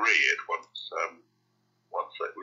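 A person's voice speaking in short clipped fragments that cut off about a second in, then silence.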